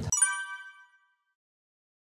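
A single bright, bell-like ding sound effect that rings and fades away within about a second, then cuts to dead silence: an editing chime marking a section change.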